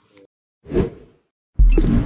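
Logo-animation sound effects: a short whoosh, then about a second and a half in a loud, sudden deep hit with bright high glints that rings on.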